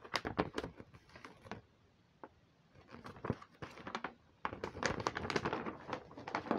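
A large sheet of poster paper being unrolled and handled, crackling and rustling in bursts: a run of crackles at first, a near-quiet stretch with a single tick about two seconds in, then denser crackling from about four and a half seconds on.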